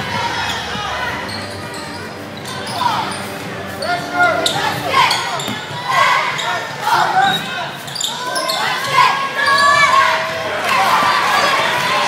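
Basketball dribbled on a hardwood gym floor, the bounces echoing, with players and spectators calling out throughout.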